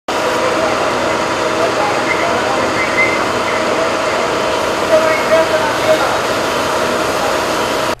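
Loud, steady engine noise like vehicles idling, with faint voices now and then in the background.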